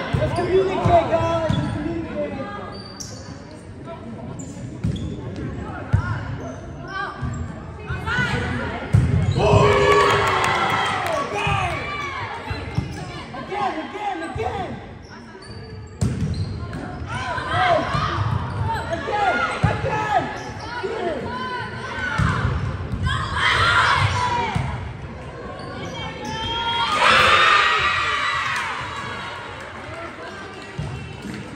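Volleyball being struck and hitting the hardwood floor in an echoing gym, with players shouting and calling throughout. The loudest burst of shouting comes near the end.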